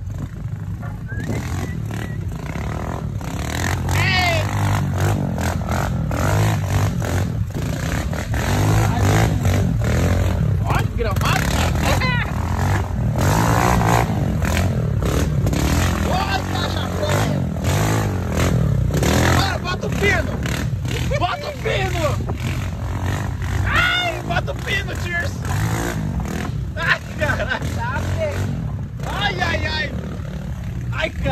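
Steady engine and road rumble of a vehicle climbing a rutted dirt trail, heard from its open back, with a dirt bike's engine running close behind. Voices call out now and then over it.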